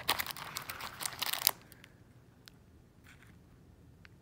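Clear plastic wrapping on gauze packets crinkling as a hand digs through a med kit pouch and pulls out a wrapped roll of stretch gauze. The crinkling stops about a second and a half in, leaving a few faint ticks.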